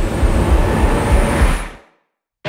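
Film-trailer sound design: a loud, deep rumble in irregular pulses under a hiss and a thin high whine, fading away quickly near the end.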